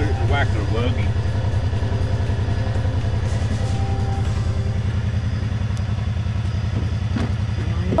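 Side-by-side UTV engine idling with a steady low rumble.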